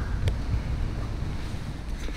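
Wind buffeting the camera microphone: a steady low rumble with hiss above it.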